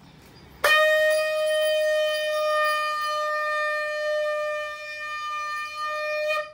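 Conch shell (shankh) blown in one long, steady note that starts suddenly about half a second in and is held for nearly six seconds, sounded at the close of the havan before the aarti.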